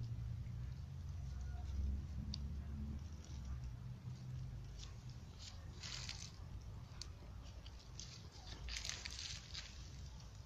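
A small dog chewing and crunching on fish, with short wet crackling bites clustered in the second half. A low rumble, like wind or handling noise on the microphone, sits under the first few seconds.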